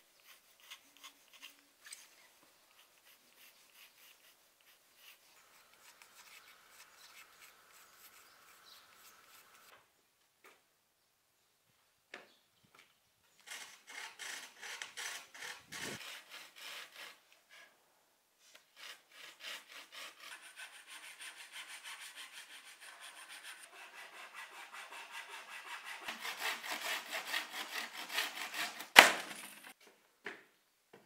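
Handsaw cutting through a wooden plank in quick back-and-forth strokes. It stops briefly, then starts again, the strokes growing louder, and ends in one sharp crack as the wood splits free near the end of the cut. Before the sawing there is faint pencil scratching on the board.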